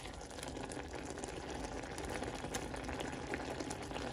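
Blueberries boiling hard in their own juice in a glass saucepan: a steady bubbling with many small pops. The berries are cooking down to give up their water and thicken.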